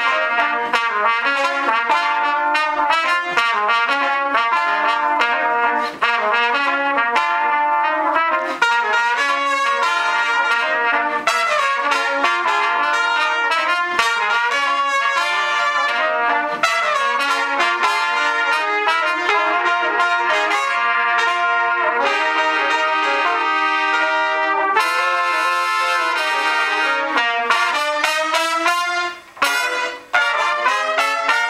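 A quartet of four trumpets playing a jazz-funk piece together in several-part harmony, in quick rhythmic notes. The sound breaks off briefly near the end.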